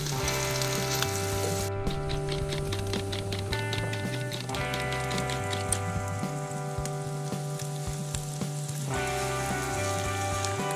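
Instrumental background music with held chords and a stepping bass line, over the crackling sizzle of sliced sausage frying in a pan.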